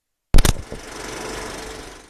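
A quick cluster of loud, sharp clicks, then a steady, rapid mechanical rattle that cuts off abruptly.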